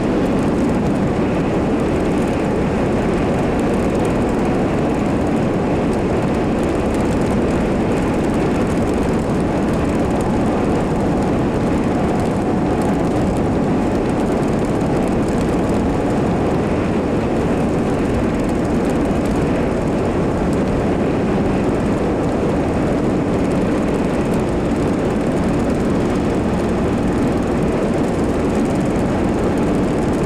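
Steady engine and road noise inside the cabin of a moving vehicle, an even low rumble that does not change.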